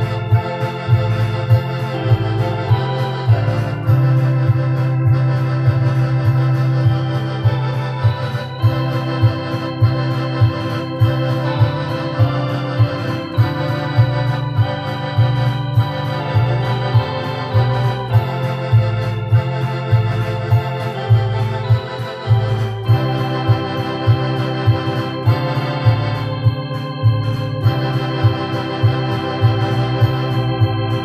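Two stacked electronic keyboards played live with both hands: an organ-style melody over a bass line and a steady beat.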